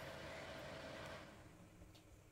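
Faint steady whir and hum of a small fan-and-light unit in a ceiling bulb socket, running on its top speed, which dies away about a second and a half in as it is switched off.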